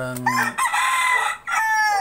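A rooster crowing loudly: one long high crow with a short break, its last part falling in pitch toward the end.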